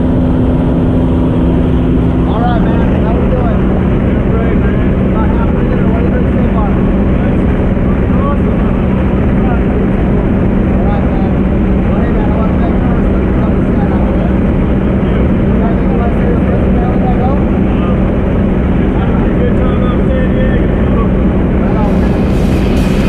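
Propeller airplane's piston engine running steadily, heard from inside the small cabin; its note drops slightly about two seconds in. Voices are faintly heard under the engine.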